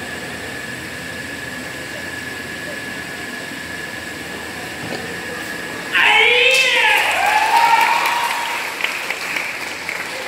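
Hall ambience with a steady thin high whine, then about six seconds in a sudden loud, drawn-out shout that rises and falls in pitch for about two and a half seconds: the karateka's kiai on the closing punch of the Shotokan kata Jion. A few scattered claps follow.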